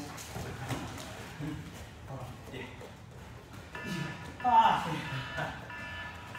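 Voices over background music, loudest briefly in the second half, with a few soft thuds from sparring on a foam mat.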